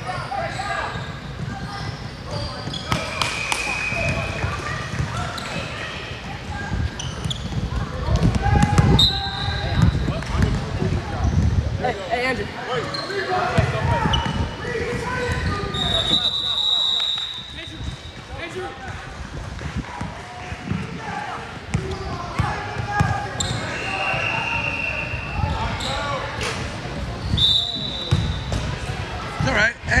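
Indoor basketball game in a reverberant gym: a ball bouncing on the hardwood court, with short high squeaks of sneakers several times, under steady voices of players and spectators.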